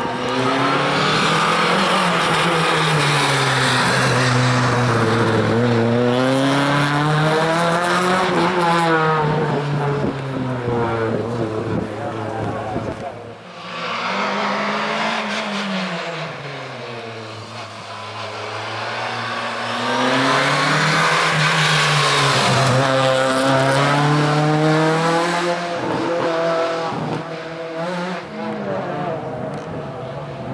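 Rally car engine revving hard and backing off again and again as the car weaves through a cone slalom, its pitch swinging up and down every couple of seconds. About 13 seconds in the sound drops briefly, then a second car's engine takes over with the same rising and falling revs.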